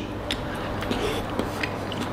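Soft chewing of food with the mouth closed, a few faint mouth clicks over a steady room hiss.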